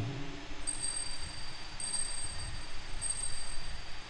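Altar bell rung three times, about a second apart, each stroke a high clear ring left to ring on. It marks the elevation of the chalice at the consecration of the Mass.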